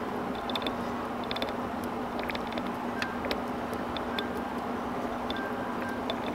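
Light, scattered metallic ticks and clicks of a metal tool touching a machined aluminium bait mold as liquid plastic is worked into the cavity, over a steady hum and hiss.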